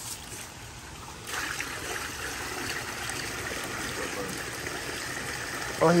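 Water poured from a foam cooler into a shallow pool of water, a steady splashing pour that starts about a second in.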